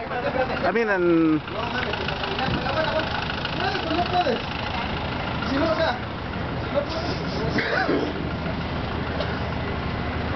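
Box truck engine idling steadily, with voices calling out over it.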